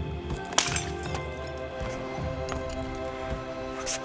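A plastic water bottle cracking sharply as it breaks, one loud crack about half a second in and a smaller crackle near the end, over background music.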